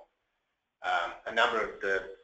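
A person speaking in a webinar presentation. The talk resumes about a second in after a short pause.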